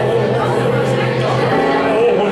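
Live improvised music: a keyboard holds a low note that stops about one and a half seconds in, under a man's voice vocalising in a speech-like way through a microphone.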